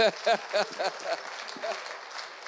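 A man laughing in short, repeated pulses, about four a second, over audience applause and laughter in a large room.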